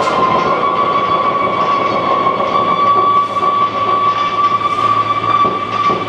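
Live experimental noise music: a held whistling tone that slides down a little at the start and then stays steady, over a thick wash of noise.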